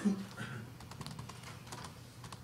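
Typing on a computer keyboard: a run of light, irregular key clicks, with a short bit of a voice at the very start.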